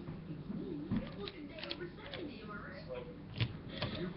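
A person's voice, soft and indistinct, murmuring under the breath, with a few sharp clicks about a second in and twice near the end.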